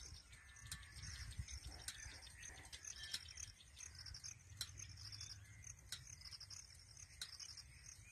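Faint outdoor ambience: a low rumble with scattered light clicks and faint, repeated high-pitched chirping.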